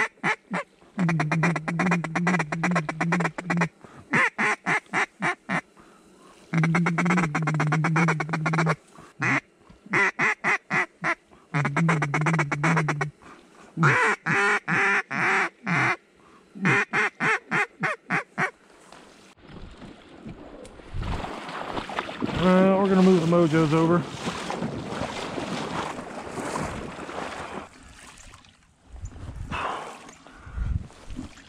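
Duck call blown in mallard-style runs of quacks, some long strings and some short, fast chattering bursts. The calling stops about two-thirds of the way through, giving way to a rustling hiss with one more wavering call.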